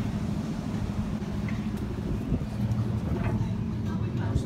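Steady low rumble of road traffic, cars and engines running on a city street.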